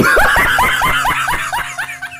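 A man laughing hard in a fast run of short "ha" bursts, about six a second, each dropping in pitch and growing quieter toward the end.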